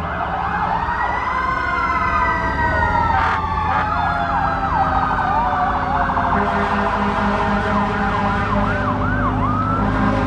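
Several emergency-vehicle sirens sounding at once: slow wails rising and falling, joined in the second half by a quicker yelp, over the steady low running of slow-moving vehicle engines. A brief burst cuts through about three seconds in.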